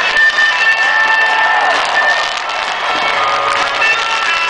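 A large stadium crowd cheering and applauding over music with long held notes.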